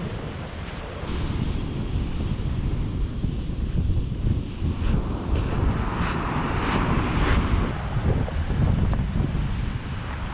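Wind buffeting the microphone over the sound of surf breaking on a pebble beach. Around the middle, a wave hisses up the shingle and a few crunching footsteps on the pebbles are heard.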